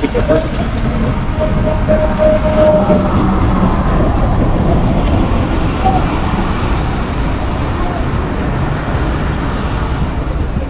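Pakistan Railways diesel locomotive and its passenger coaches rolling in along the platform, a steady rumble of wheels on rails.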